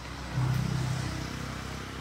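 A motor vehicle's engine running nearby, with a low hum that swells about half a second in and then fades.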